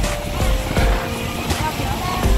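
Uneven low rumbling and buffeting aboard a boat under way, with background music and voices over it.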